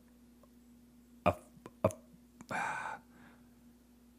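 A man's wordless vocal noises of indecision: a short grunt about a second in, a mouth click, then a strained groan of about half a second.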